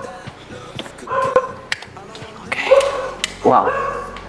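A dog barking a few times in short, separate barks.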